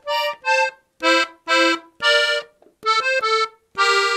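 Three-row diatonic button accordion in F (F–B♭–E♭), played on the treble side: a short phrase of detached notes, many of them two-note double stops, ending on a held two-note chord.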